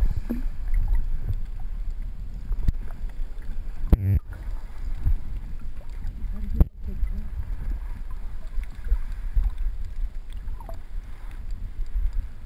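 Water noise picked up by a camera held underwater: a low, uneven rumble of moving water with scattered small clicks, and two sharper knocks about four seconds in and near seven seconds.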